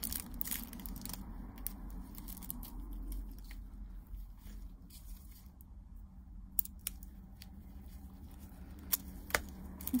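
Gloved hands handling a roll of thin plastic nail-art transfer foil: a brief patch of crinkling and crackling, then a few isolated sharp clicks spread over the rest, against a low steady hum.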